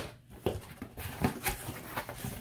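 Scissors cutting through packing tape on a cardboard shipping box, a few short, sharp snips and crackles.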